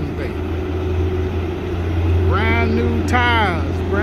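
Diesel engine of a 2017 Peterbilt 579 semi tractor idling with a steady low rumble.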